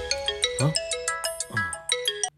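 Mobile phone ringing: a ringtone playing a quick melody of short bell-like notes, with two sliding swoops partway through, signalling an incoming call.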